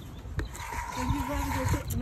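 Thick cornstarch chalk paint pouring from a plastic measuring cup into a plastic squeeze bottle, with a short click near the start.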